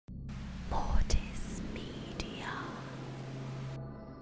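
Horror-style logo intro sting: a whispered voice over a wash of static-like hiss and a low steady drone, with sharp glitchy hits about a second in. The hiss cuts off suddenly just before the end, leaving the drone.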